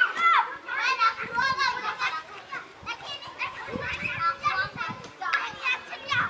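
Children playing, many young voices calling and chattering over one another.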